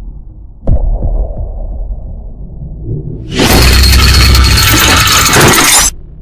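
Cinematic intro sound effects: a deep impact hit about a second in with a low rumbling tail, then from about halfway a loud noisy crash with heavy bass that cuts off suddenly just before the end.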